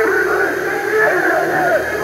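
A person's voice with a thin, radio-like sound, with some music underneath.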